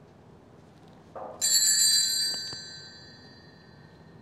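Altar bell rung at the priest's communion at Mass: a bright metallic ring about a second and a half in that dies away over the next second or so.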